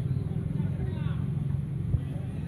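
A steady low rumble with faint distant voices over it.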